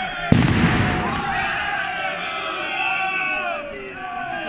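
A single loud bang about a third of a second in, with a short ringing decay, over a group of voices shouting that carries on afterwards.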